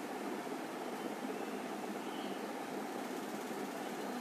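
Steady, even background hum with no distinct events.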